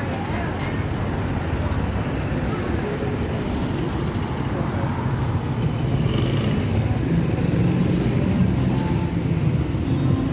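Street traffic: cars and motor scooters running along the road, with a vehicle close by getting louder in the second half.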